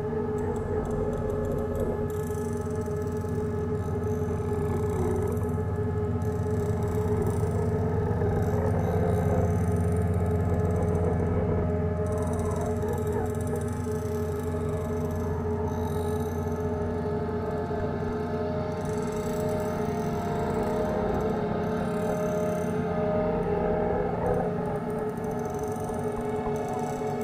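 Experimental ambient improvisation music: a low sustained drone under layered held tones, with slow wavering, gliding pitches drifting above it. The sound swells gently toward the middle.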